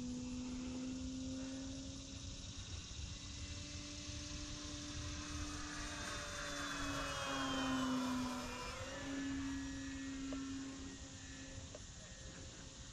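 Electric motor and propeller of an E-flite Pitts S-1S 850mm RC plane whining in flight. It grows louder as the plane passes close about eight seconds in, and its pitch drops as it goes by.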